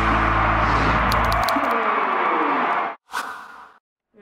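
The end of a promotional soundtrack: the music's low notes die away under a loud rushing whoosh with a falling tone, which cuts off abruptly about three seconds in and is followed by a brief second burst of noise.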